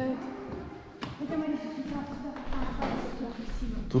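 Quiet speaking voices in a room, with a single sharp tap about a second in.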